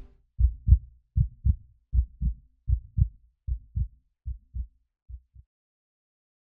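Heartbeat sound effect: low, muffled double thumps, about one pair every 0.8 seconds, growing fainter and stopping about five seconds in.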